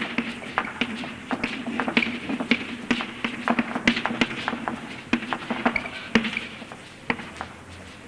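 Chalk tapping and scraping on a chalkboard as Greek letters are written out by hand: a string of irregular sharp taps, several a second.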